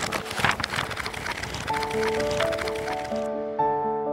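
Background music of slow, held notes, with a hissing, crackling transition sound effect laid over it that cuts off suddenly about three seconds in.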